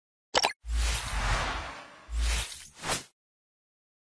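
Electronic logo sting: a quick pop, then whooshing swells over deep bass hits. It cuts off suddenly about three seconds in.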